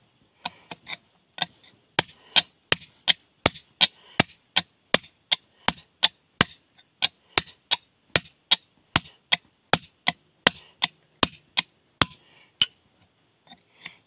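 Hand hammer striking a steel chisel held against a stone slab, a steady run of sharp blows at about three a second, chipping along a split line in the rock. The blows start lightly and stop a little before the end.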